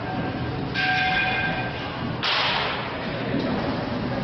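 Aluminium baseball bat hitting a ball in a batting cage: a sharp hit about a second in that rings with a metallic ping for nearly a second, then a second, duller impact about two seconds in.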